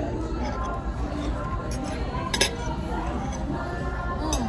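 Cutlery clinking against a plate over restaurant chatter: a sharp clink about two and a half seconds in, with a fainter one just before it.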